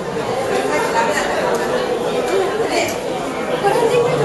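Crowd chatter: many people talking at once in a large indoor space, a steady murmur with no single voice standing out.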